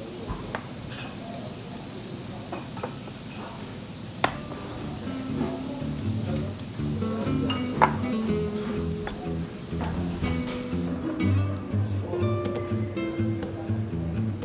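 Glasses and dishes clinking as they are set down on a wooden table, with a sharp clink about eight seconds in. Music with changing notes comes in from about halfway.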